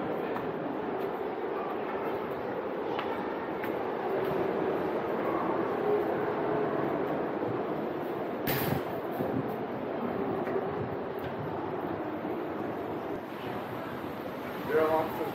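Steady, echoing rumble of ocean surf inside a sea cave, with one sharp knock about eight and a half seconds in.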